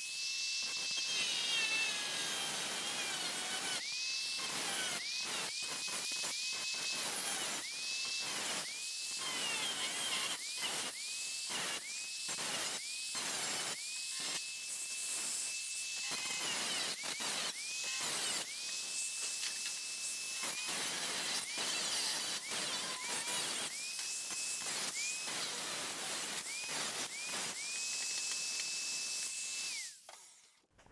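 Handheld electric grinder working a rusty steel floor pan, switched on in many short bursts; each burst rises quickly to a steady high whine, over a hiss of grinding.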